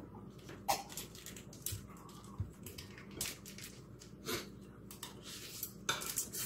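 Faint, scattered clicks and knocks of tableware, about one a second: a ceramic mug set down on a table and a fork against a plate.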